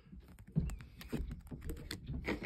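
Handling noise: a quick, irregular run of clicks and light knocks from rigid plastic top-loader card holders being handled and the camera being bumped.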